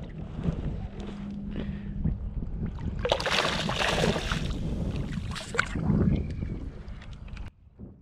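Hooked summer flounder (fluke) thrashing and splashing at the water's surface beside the kayak, loudest about three seconds in and again briefly near six seconds, over a steady rumble of wind on the microphone.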